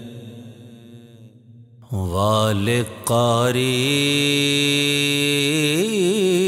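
A male vocalist singing a manqbat, an Islamic devotional song. A held note fades away, and after a quiet pause of about two seconds he comes back in with a long held line that bends and wavers in pitch.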